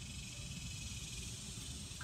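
Faint, steady high hiss with a low rumble beneath it: outdoor background noise between words.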